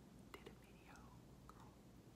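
Near silence: a pause in talk, with a faint, whisper-like voice or breath and a few small clicks over a low room hum.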